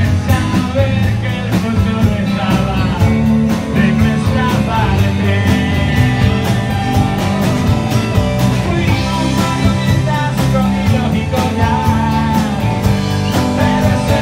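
Live rock band playing: a man sings over acoustic and electric guitars, bass and a steady beat.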